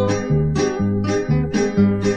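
Instrumental break in a Colombian guasca song: strummed acoustic guitar chords over a steady alternating bass line, with no singing.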